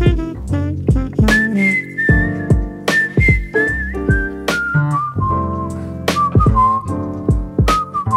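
Instrumental break of a jazzy pop song: a whistled melody over a steady drum beat, acoustic bass and chords. The whistled line enters high about a second in and steps down to a lower, held pitch in the second half.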